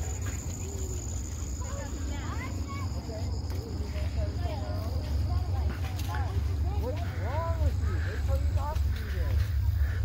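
Distant children's voices calling and shouting in short bursts, over a steady low rumble on the microphone and a faint steady high-pitched whine.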